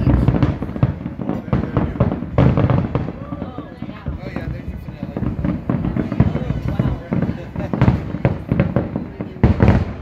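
Aerial fireworks shells bursting in a rapid, irregular series of booms and crackles, with heavy peaks about two and a half seconds in and just before the end.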